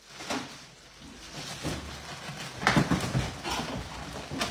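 Plastic wrapping rustling and crinkling, with light knocks of plastic bins, as one bin is worked out of a wrapped stack. The rustling is loudest about three seconds in.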